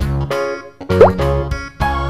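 Instrumental children's background music on keyboard. It dips briefly, then a short rising cartoon pop sound effect sounds about a second in, and the music comes back fuller near the end.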